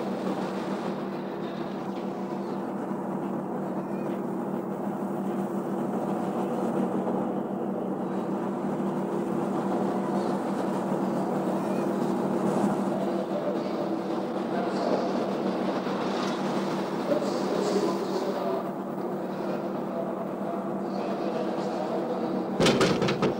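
Steady hum of a train standing at a station, with faint indistinct voices in the background.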